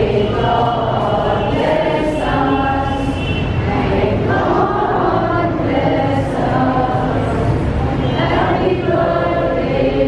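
A group of voices singing a hymn together in unison, with long held notes.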